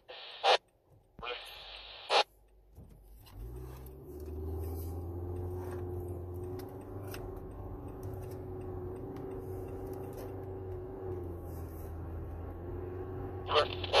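Car engine and road noise heard from inside the cabin as the car pulls away from a stop, settling into a steady low hum while it drives. In the first two seconds there are a few short bursts of two-way radio static and squelch.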